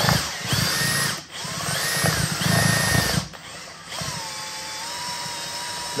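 Cordless drill spinning a hand-mixer beater down inside a jar of peanut butter to stir the separated oil back in. It runs in two loud bursts that whine up to speed with brief stops between, then settles into a quieter, steadier run at lower speed for the last two seconds.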